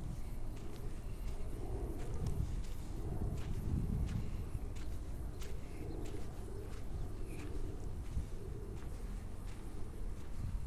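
Footsteps of a person walking on a sandy beach, soft irregular crunches about one or two a second, over a steady low rumble on the microphone.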